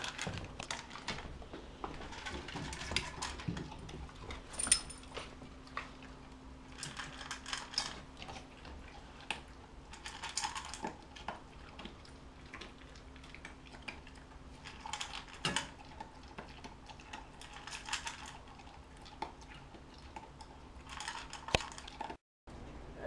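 Labrador/Boxer mix dog with its muzzle in a stainless steel bowl, its mouth clicking and clinking against the metal in short bursts every few seconds, over a faint steady hum.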